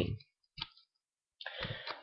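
A single short click about half a second into a pause in talk, then a soft breath just before speech resumes.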